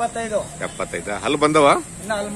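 A man talking, with the loudest stretch a little past the middle, over a faint steady high hiss.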